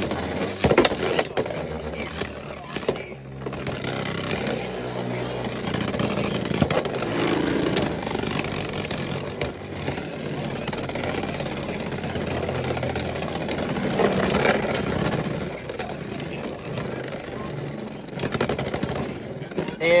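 Two Beyblade Burst spinning tops whirring and scraping on a plastic stadium floor, with frequent sharp clicks as they strike each other. Near the end one top is knocked down and stops spinning.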